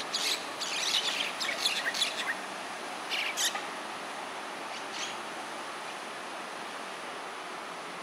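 Myna calls: a quick run of short, high notes in the first two seconds, another short burst about three seconds in, and a single call near five seconds, over steady background noise.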